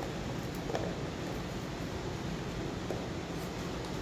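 Steady background room hiss, with a few faint clicks as a framed specimen box is handled on a tray.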